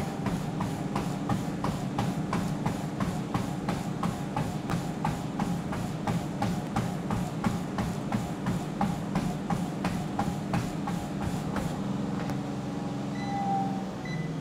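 Fast running footfalls on a motorized treadmill deck, about three strikes a second, over the steady hum of the treadmill's motor and belt at sprint speed. The footfalls stop about twelve seconds in while the treadmill keeps running.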